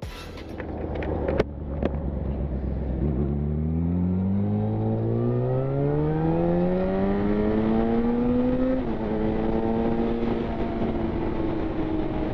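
Yamaha FZ1's inline-four engine accelerating under load, its pitch rising steadily for about six seconds. The pitch then drops suddenly at an upshift and the engine runs steadier. There is a sharp click about a second and a half in.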